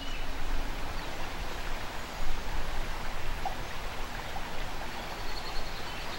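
Steady rushing of a river flowing.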